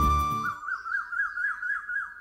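Background score: a flute holds a note over a low drone. The drone drops out about half a second in, leaving the flute alone in a quick warbling trill that fades near the end.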